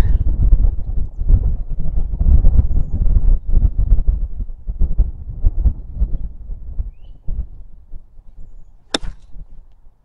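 A loud, low rumbling noise that eases off about seven seconds in, then a single sharp crack of a golf club striking the ball near the end.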